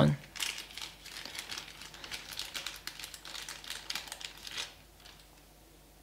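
Packaging crinkling and rustling in the hands as a small toy figure is unwrapped: a dense run of small crackles that stops about a second before the end.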